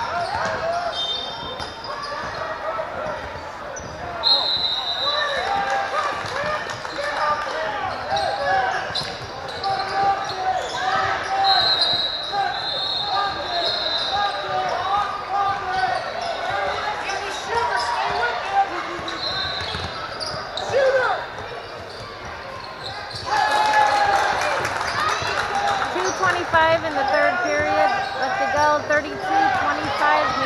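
Basketball game in a large gym: many voices talking and calling out from the sidelines, with short high squeaks several times and the ball bouncing. The voices get louder about three-quarters of the way through.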